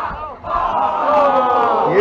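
A long, loud yell held from about half a second in, its pitch falling slowly.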